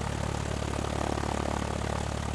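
Stinson 108's engine and propeller running steadily at takeoff power during the climb-out, heard as an even drone inside the cabin.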